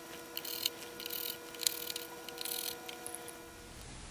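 Small screwdriver working out the tiny screws that hold a circuit board in its aluminium case: faint clicks and scratches in about five short groups, over a faint steady hum.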